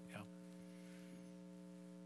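Near silence with a steady electrical mains hum of several fixed tones in the recording.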